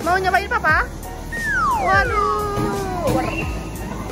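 High-pitched excited squeals in the first second, then a long voice-like 'wheee' that glides down in pitch over about two seconds, as a person comes down a tube slide into a ball pit, over background music.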